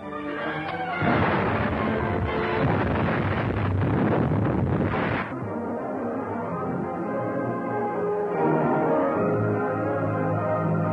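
A loud film explosion sound effect over dramatic orchestral music, starting about a second in and lasting about four seconds before it cuts off, after which the orchestral music carries on alone.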